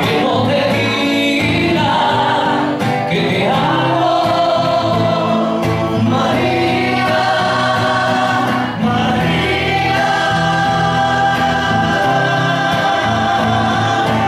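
Two men singing a song together into microphones over live musical backing, holding long notes.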